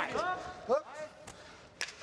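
Knee strikes landing in a kickboxing clinch: two sharp impacts about half a second apart, after brief fragments of voice.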